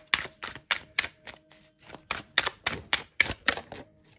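Tarot cards being shuffled by hand: a quick, even string of sharp card snaps, about three or four a second, that stops near the end.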